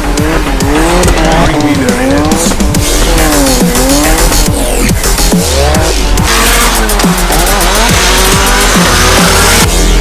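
Drift cars sliding sideways on a wet track: engines revving up and down in pitch, with tyre squeal and spray hiss that grow stronger about six seconds in, mixed under electronic music with a heavy bass beat.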